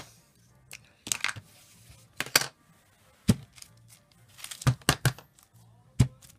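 Wooden-block rubber stamp tapped on an ink pad and pressed onto tissue paper over a plastic mat: a handful of sharp knocks and taps, with a quick run of several near the end. Faint music plays underneath.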